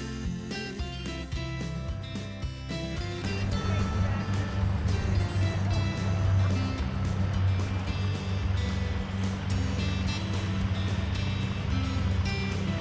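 Background music over a tour boat's motor running steadily, a low hum with water noise that sets in about three seconds in.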